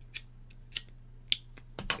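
Short, sharp clicks, about four of them, a little over half a second apart.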